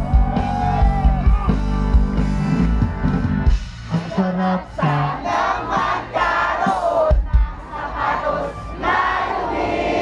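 Live rock band playing with heavy bass and a sung line. About four seconds in, the band drops back and a large crowd sings along and shouts.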